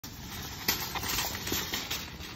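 Wire shopping cart rolling across pavement, its casters and metal basket rattling with irregular knocks.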